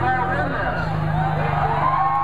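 A demolition derby car's engine running at low revs, its note dropping about half a second in, under the chatter and shouts of a large crowd.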